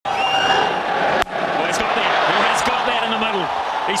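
Cricket stadium crowd noise, with a single sharp crack of bat striking ball about a second in as the ball is hit for six. Raised voices follow near the end.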